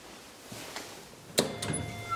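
Two sharp clicks about a quarter second apart, the first the loudest thing here: the latch of a Deve-Schindler elevator's hinged hall door releasing as the door is opened.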